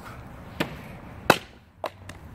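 A part-filled plastic drink bottle thrown at a basketball net, knocking three times as it strikes and falls: once about half a second in, loudest just past the middle, and faintly near the end as it comes down onto tarmac. The throw misses the net.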